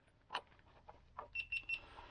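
A couple of light clicks from plastic wiring connectors being handled, then four quick, short, high-pitched electronic beeps from a digital multimeter.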